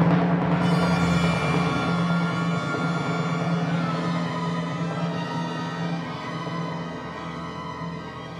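Symphony orchestra holding a loud sustained chord over a timpani roll, swelling to a peak at the start and then slowly dying away.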